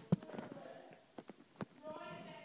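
A few light clicks and knocks of handling, the loudest just after the start and several more in the second half.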